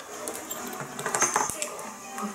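A quick cluster of light clinks and clicks about a second in.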